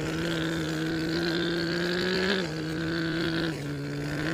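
A steady, low imitation truck-engine drone for a toy dump truck climbing a dirt slope, its pitch dipping slightly about halfway through and again near the end.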